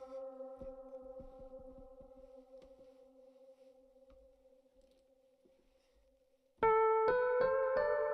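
Reverb-heavy Rhodes-style electric piano patch (Omnisphere's 'Black Hole Rhodes'): a held chord fades away slowly. A little past six seconds in, a new run of notes starts, struck in quick succession and stepping upward.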